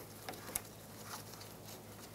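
A few faint, short clicks and light scrapes of a flat-blade screwdriver working the retaining clip on a radiator isolator bushing.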